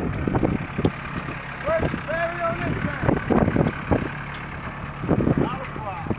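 Diesel engine of a Case IH Farmall 45 compact tractor running at low revs with a steady low hum as the tractor pulls up and stops.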